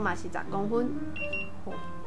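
A voice talking for about the first second, then a brief steady high tone, over a steady low hum.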